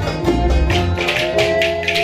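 Wooden spoons (kaşık) clacked by dancers in a quick, even rhythm over Ankara oyun havası dance music. The deep low beat drops away about halfway and a held melody line comes in.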